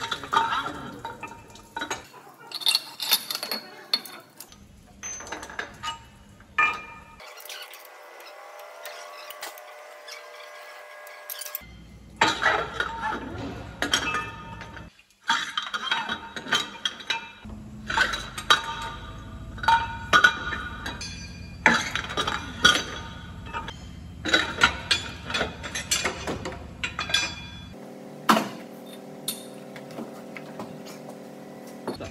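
Repeated metallic clinks and knocks as a liner puller works steel cylinder liners out of a MAN D2066 diesel block and the pulled liners are handled, some strikes ringing. The liners have begun to seize in the block and move only with difficulty.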